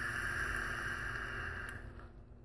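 A long draw on an Innokin iSub Apex sub-ohm tank on a box mod: a steady airy hiss of air pulled through the tank's airflow past the firing coil, cutting off sharply at the end of the draw. There is a faint click shortly before it stops.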